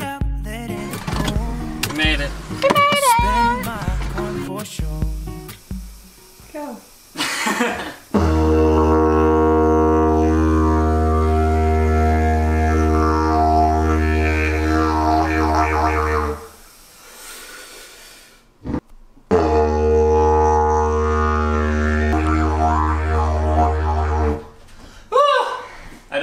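A song with singing plays at first. Then a didgeridoo sounds in two long, steady low drones of about eight and five seconds, with a short break between them.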